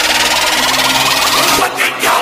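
Electronic whoosh and riser sound effects from an animated logo intro: a dense, noisy sweep with quick rising tones, dipping briefly near the end.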